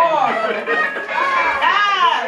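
Voices calling out in drawn-out exclamations that rise and fall in pitch, with music playing along.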